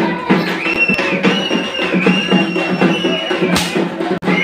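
Festival band music: fast, steady drumming under a high, wavering melody line that enters about a second in and holds until near the end.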